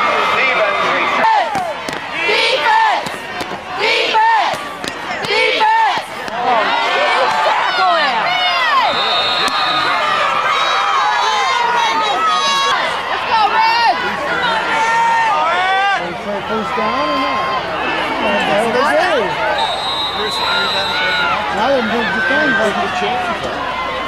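Spectators at a football game yelling and talking over one another, many voices at once with cheers and single shouts.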